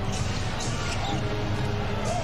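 Game broadcast audio: a basketball being dribbled on the hardwood court over steady arena crowd noise.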